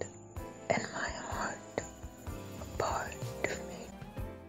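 A soft whispered voice speaking over background music with steady sustained notes, in two short phrases about half a second in and near the three-second mark.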